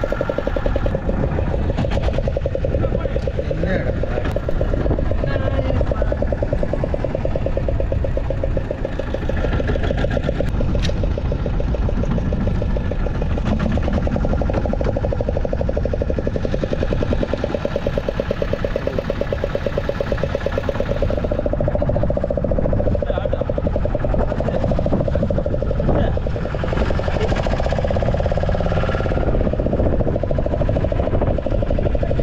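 Small fishing boat's engine running steadily, with wind and sea noise over it.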